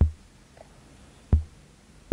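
Ciat-Lonbarde Plumbutter's gong voice, triggered by its sequencer, sounding as a kick drum: two hits, one right at the start and another a little over a second later. Each is a sharp click over a low thump that dies away quickly.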